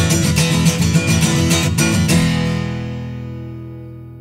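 Acoustic guitar strumming a quick rhythm, then ending on a final chord about two seconds in that rings and slowly fades away: the close of the song.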